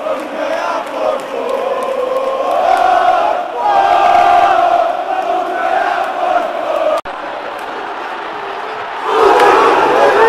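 Large stadium crowd of football supporters singing a chant together in long held notes. About seven seconds in, the sound cuts off abruptly to a steadier crowd noise, which swells into loud massed shouting near the end.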